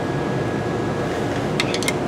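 Steady hum of a fan or air-handling unit, with a few light metallic clicks close together near the end as a flat screwdriver levers the brake hub round by its studs.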